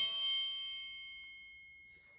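A metal chime struck once, its clear high ringing fading away steadily over about two seconds.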